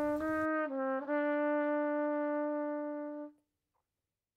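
Brass music ending on held notes. After two short note changes, a final long note is sustained and then cuts off about three seconds in, leaving silence.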